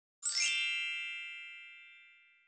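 Bright bell-like chime sound effect for an animated logo intro. It comes in suddenly with a quick rising shimmer about a quarter second in, then rings on and fades away over the next second and a half.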